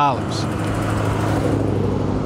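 A dark SUV driving past on an asphalt street: a steady engine hum with tyre noise.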